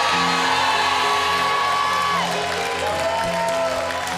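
Sustained chords from a church worship band's keyboard, shifting to new chords about halfway through. A congregation cheers and shouts over them, fading after the first couple of seconds.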